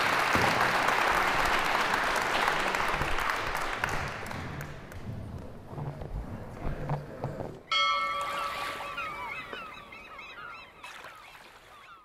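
Audience applause, dying away over several seconds. About eight seconds in it cuts off and a different sound begins: a few held tones with quick rising-and-falling glides over them, fading out by the end.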